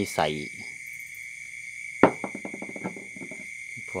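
Steady, high-pitched trilling of night crickets runs through. About two seconds in there is one sharp knock as a glass bottle is handled on the wooden boards.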